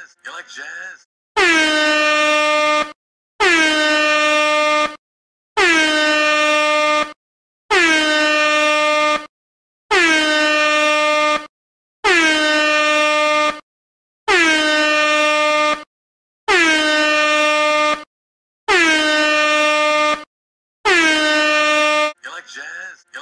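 Air horn sound effect blasting ten times in a steady rhythm, each blast about a second and a half long at one loud steady pitch, with short gaps between them.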